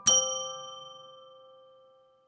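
A single bell-like chime, struck once right at the start, ringing on and fading away over about two seconds.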